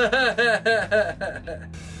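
A man laughing in a string of short 'ha' bursts that tails off about a second and a half in, over background music.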